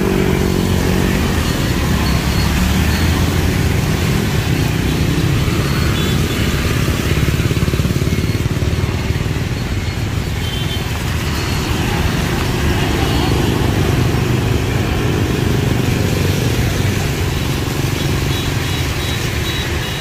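Dense traffic of motorbikes and cars passing close by on a rain-wet street: a steady wash of small engines and tyre hiss on wet asphalt.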